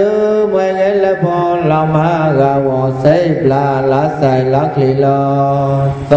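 A man's voice chanting a Buddhist recitation, drawn out and melodic, holding long notes with slow rises and falls in pitch.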